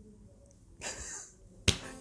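A man's short, breathy stifled laugh about a second in, then a single sharp click just before he laughs aloud.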